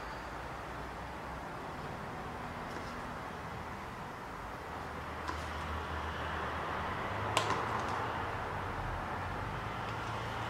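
Ceiling fans running: a steady hum and air noise, getting a little louder about halfway through, with one sharp click near the end.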